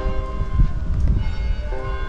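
Church bells ringing, their tones hanging on and overlapping, with fresh strikes near the end. A low rumble sits underneath.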